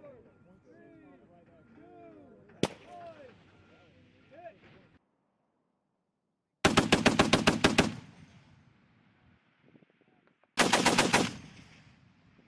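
M2 .50-caliber heavy machine gun firing two short bursts about four seconds apart in the second half, the first a little over a second long and the second shorter, each a rapid string of evenly spaced shots. Earlier, under voices, a single rifle shot cracks once.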